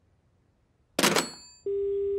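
A sudden crash about a second in, followed by a steady telephone dial tone on a dead line.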